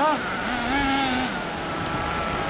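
Small two-stroke nitro engine of a 1/8-scale RC buggy revving in throttle blips: a quick blip at the start, then a higher rev held for under a second before it drops back to a lower steady note.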